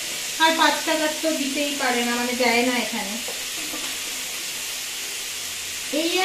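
Food frying in oil in a wok on a gas stove: a steady sizzling hiss. A woman's voice talks over it for the first half.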